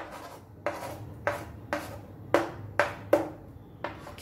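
A metal spoon knocks and scrapes against a wooden cutting board and a glass bowl as diced boiled potato is pushed into the bowl. There are about eight sharp taps, each a little over half a second apart.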